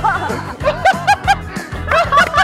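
A group of young men laughing hard in quick repeated 'ha-ha' peals, over background music with a steady beat.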